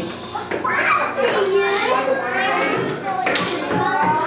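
Young children's voices chattering.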